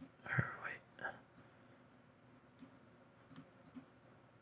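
Faint computer mouse clicks, about four short ones in the second half. Near the start there is a brief soft mouth noise.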